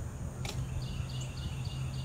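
A small bird chirping faintly in a series of short high notes, about three a second, over a steady low hum. A single click comes about half a second in.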